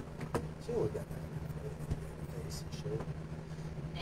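A steady low hum throughout, with a few sharp clicks and knocks, one near the start and another about two seconds in, from handling close to the microphone, and a brief mumbled voice about a second in.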